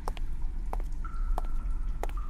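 Dungeon-like ambience: a steady low rumble with a few sharp water drips, and a thin, steady high tone that comes in about a second in.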